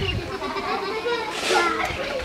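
Voices calling and chattering, with children playing in the background.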